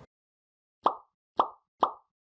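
Three short pop sound effects about half a second apart, marking the like, comment and share icons popping up in an end-screen animation.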